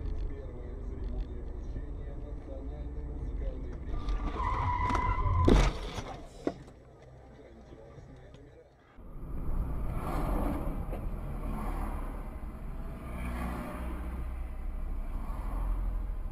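Car collision heard from inside a dashcam car: road noise, a brief tyre squeal about four seconds in, then a loud crash of impact at about five and a half seconds and a sharp knock a second later. After a cut near nine seconds comes steady driving road noise.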